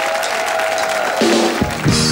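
Studio audience applauding over a band's sustained chords, with bass and drums entering about one and a half seconds in.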